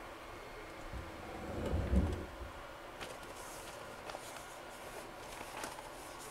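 Faint handling sounds as a glass piece wrapped in butcher paper is moved on a heat press: a soft low rumble about two seconds in, then a few light clicks and a brief faint rustle.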